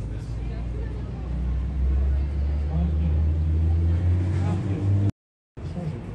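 A motor vehicle's engine running close by in street traffic, a low steady rumble that grows louder about two seconds in, with passers-by talking faintly. All sound cuts out abruptly just after five seconds for about half a second, then street noise returns.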